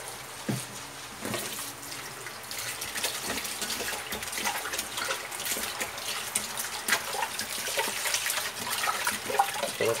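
Tap water running into a metal pressure cooker pot in a sink, splashing onto chunks of raw beef. The stream is steady and grows a little louder over the stretch. Near the end a hand stirs the meat in the water to rinse it.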